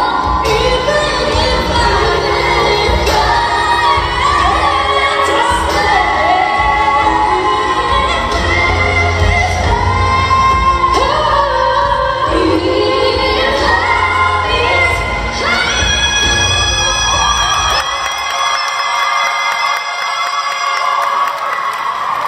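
A female vocal group singing a pop ballad live in harmony over a backing track, with crowd cheering mixed in. Near the end the bass drops away and the voices hold long notes.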